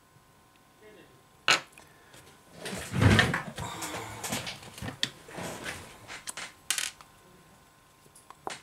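Handling noise from the iPhone 6 charging-port flex cable being fitted into the phone's frame: a sharp click about one and a half seconds in, then a run of small scrapes and clicks, loudest around three seconds in.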